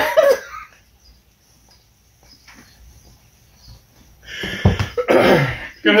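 A short laugh, then quiet, then a loud burst of coughing about four and a half seconds in: a reaction to the burn of a very hot pepper sauce that has just been tasted.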